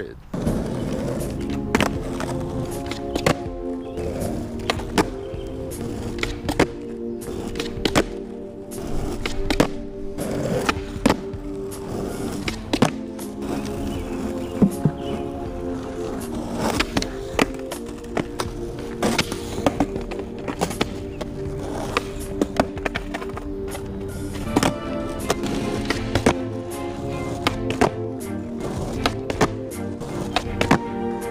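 Skateboard on asphalt during repeated kickflip attempts: sharp clacks of the tail popping and the deck slapping down, every second or two, with wheels rolling between them. Background music runs under them throughout.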